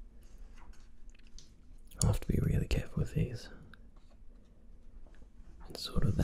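Glossy comic-book pages being turned and pressed flat by hand: a loud paper rustle about two seconds in and another turn starting near the end, with faint paper clicks in between.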